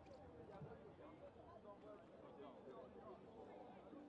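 Faint, indistinct chatter of many voices from spectators and players around a rugby sevens pitch, with no single voice standing out.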